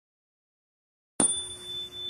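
Dead silence, then a little over a second in, a single bell-like ding sound effect strikes suddenly and rings on with a steady low tone and two high tones.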